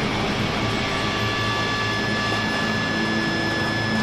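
Dark ambient drone from a cinematic soundtrack: an even, unbroken rumbling noise with a few thin high tones held steadily over it, with no beat or melody.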